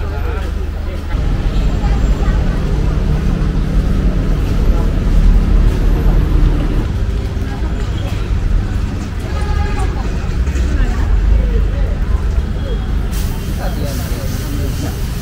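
Busy city street: a steady low traffic rumble with people talking around. Near the end a hiss sets in, batter going onto a hot iron griddle.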